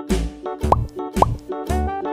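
Upbeat children's background music with a steady drum beat, with two quick rising-pitch sound effects, about two-thirds of a second and just over a second in.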